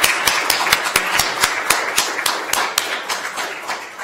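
Audience applauding: dense clapping that thins out and fades toward the end.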